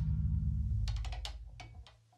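The band's last low note rings out from the amplifiers and fades away at the end of a song. A few sharp clicks or taps come about a second in and again near the end.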